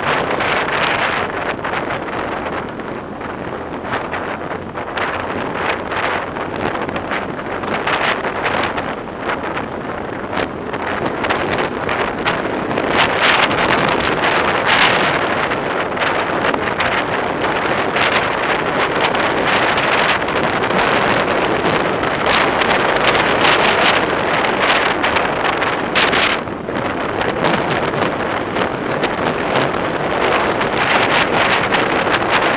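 Wind rushing and buffeting on the microphone of a camera carried on a vehicle moving at highway speed, over road and traffic noise, with irregular gusty surges.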